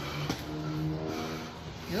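A steady motor or engine hum with several even tones, swelling for about a second, with one short sharp knock just before it.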